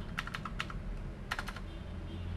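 Computer keyboard keys clicking as code is typed: a quick run of keystrokes in the first second, then a few more about a second and a half in.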